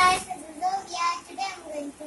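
A young girl's voice in a few short, sing-song phrases, with the last chord of the intro music dying away at the very start.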